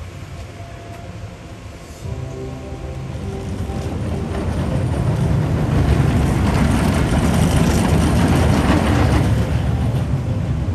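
Steel family roller coaster train running along its track, a rumble that grows louder from about two seconds in and is loudest in the second half as the train passes close by. Background music plays faintly under it.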